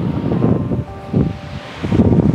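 Wind buffeting the microphone in irregular gusts, a loud low rumble, with ocean surf beneath.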